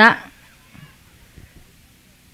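A woman's voice ending a phrase at the microphone, then a pause of faint background noise.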